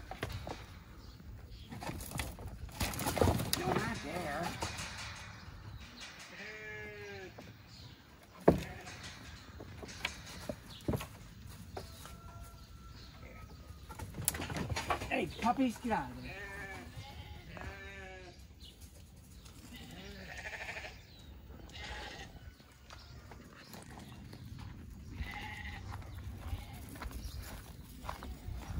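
Sheep bleating several times in wavering calls, over rustling and cracking of dry, thorny brush, with a sharp knock about eight seconds in.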